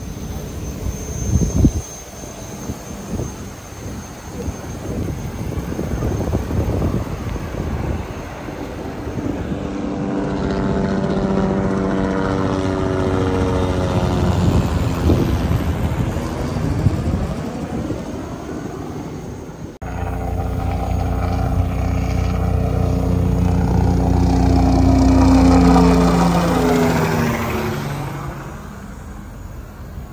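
An engine passing by twice: each pass grows louder over several seconds and then fades, and the second pass follows an abrupt cut. There are a couple of short knocks near the start.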